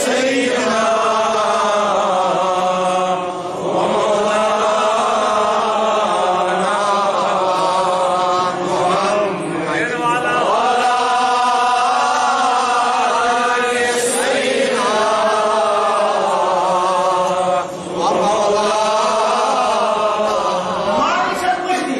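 A man chanting religious verses in long, held melodic phrases, pausing briefly for breath every few seconds.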